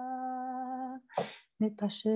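A woman's solo voice holding one long, steady sung note in a Jewish chant, which stops about a second in. A short breathy sound follows, and the next sung phrase begins near the end.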